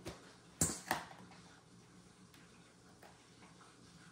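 Two sharp knocks in quick succession, under a second in, then faint room tone.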